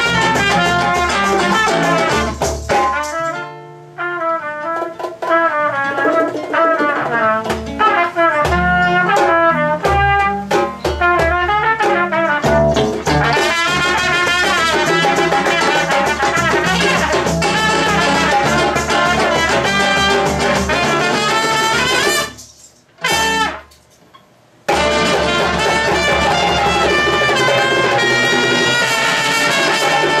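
Live trio of trumpet, nylon-string acoustic guitar and hand drums playing a klezmer-style tune, the trumpet leading. Near the end the band stops dead for about two seconds, with one short hit in the gap, then comes back in together.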